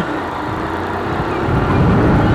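Motorcycle running as it rides off in city traffic, with wind and road noise on the microphone. The sound gets louder about a second and a half in as the bike picks up speed.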